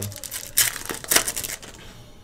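Foil wrapper of a trading card pack being torn open and crinkled by hand, with two louder crackling tears about half a second and a second in.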